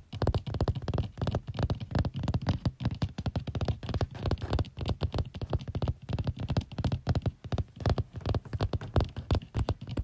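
Rapid close-up tapping and scratching, many quick irregular taps a second, each with a dull low thud.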